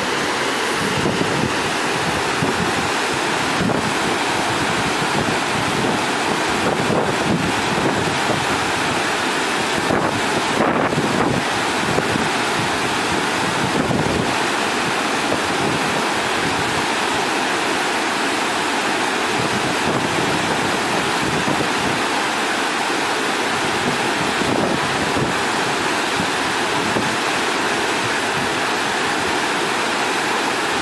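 Steady rushing of a fast river, with wind buffeting the microphone.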